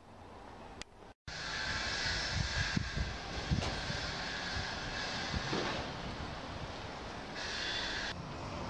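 Outdoor town street noise: a steady rush with a few low thumps, starting abruptly after a moment of silence about a second in.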